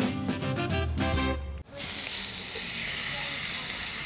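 Upbeat background music that cuts off suddenly about a second and a half in, followed by the steady sizzle of steaks frying on a hot flat-top griddle.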